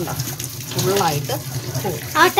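Tap water running steadily into a stainless steel sink as a steel wool scrubber is rinsed and squeezed under the stream, with a person's voice talking over it.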